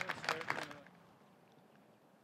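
Spectators clapping, with a few short cheers, dying away within the first second after a good disc golf drive; then faint outdoor quiet.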